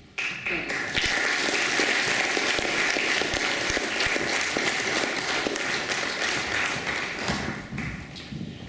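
An audience applauding, starting suddenly just after the start and dying down near the end.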